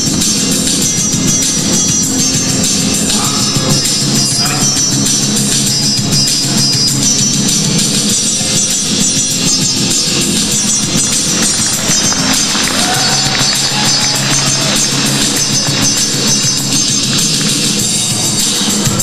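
Loud, continuous background music with percussion.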